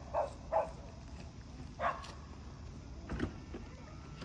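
A few short, faint voice-like sounds, then about three seconds in a click and a faint steady whine as the Tesla Model 3's driver door is released and its frameless window glass motors down a little.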